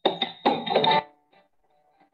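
About a second of a recorded march song, the club anthem sung by a band, played from a computer over a video-call screen share. It cuts off suddenly about a second in, leaving only a faint thin tone.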